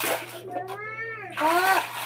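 A cat meowing twice: a longer call, then a shorter, louder one that rises in pitch.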